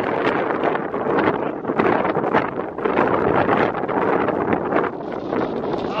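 Wind buffeting the microphone: a steady rushing noise broken by frequent short gusts.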